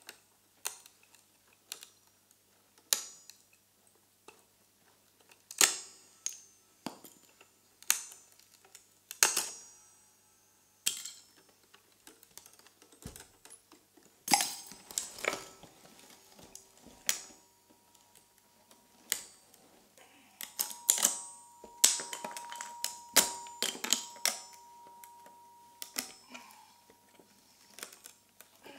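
Free-improvised accordion playing made of sparse, sharp clicks and taps on the instrument, each with a short ring. About halfway through, two quiet held reed tones come in beneath clicks that grow denser.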